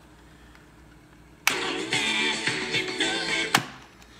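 Music played from a cassette on a Tyler TCP-02 portable cassette player and heard through a small Bluetooth speaker. It starts abruptly with a click about a second and a half in and cuts off with another click near the end, with a little wow and flutter as the tape gets going, which is typical.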